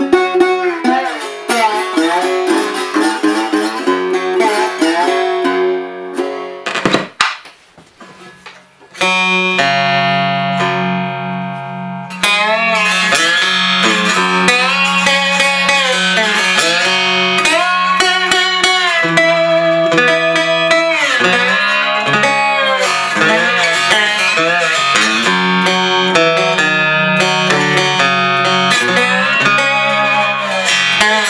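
Three-string cigar box guitar with a paint-can-lid resonator played with a slide: picked notes with gliding pitches. The playing drops out briefly about seven seconds in, then a held chord rings and fades before the picking picks back up.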